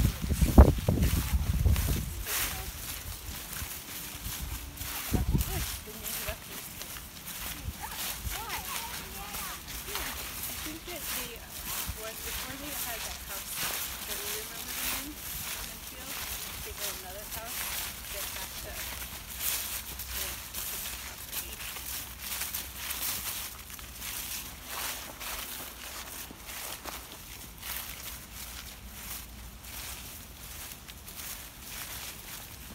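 Footsteps crunching and shuffling through dry fallen leaves, a dense run of quick crackles, with faint voices now and then. A loud low rumble fills the first two seconds, with a shorter one about five seconds in.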